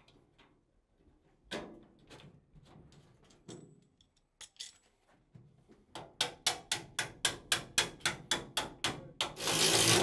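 Sheet-metal duct being worked with hand tools to fold over and seat a drive cleat: light scrapes and clicks at first, then about a dozen quick metallic taps at roughly four a second, ending in a short, loud scraping burst near the end.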